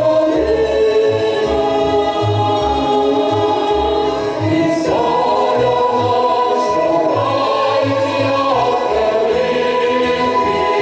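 Mixed choir of men's and women's voices singing a Ukrainian folk song in long held chords. The chord shifts about halfway through and again near the end.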